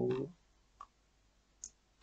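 Two faint, brief clicks of a computer mouse about a second apart, in near quiet after a spoken word trails off.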